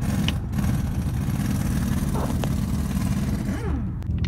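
Steady low rumble of a car's engine heard from inside the cabin, with a few faint ticks.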